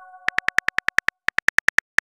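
Phone keyboard key-click sounds as a text message is typed: a fast run of short, even ticks, about ten a second, with a brief break just after a second in. The last of a multi-note chime dies away at the very start.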